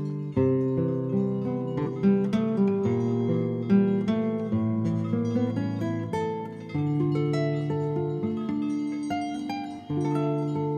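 Guitar playing an instrumental passage of plucked notes and chords, the notes ringing on and changing every half second or so.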